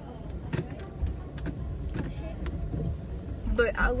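Steady low rumble inside a car's cabin, as of a small car idling, with a few light clicks and knocks. A woman starts speaking near the end.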